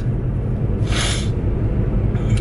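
Steady low road and engine rumble inside a moving car's cabin, with one short breathy sniff or exhale from the driver about a second in.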